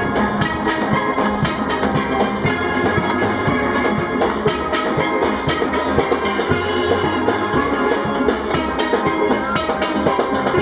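Steel band playing: many steel pans ringing out a tune together over drums keeping a steady beat.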